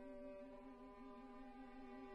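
Soprano voice and violin performing quietly, one long low note held with an even vibrato.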